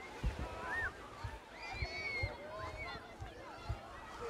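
Distant, indistinct voices of people outdoors, with soft low thuds of the walker's footsteps on the path at an irregular pace.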